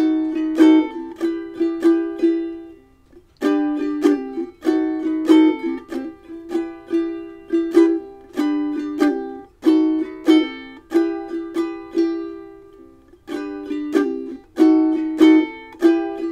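Ukulele strumming a short chord-change phrase, the G to B7 to E minor set, played over and over as practice, with two brief pauses between repeats.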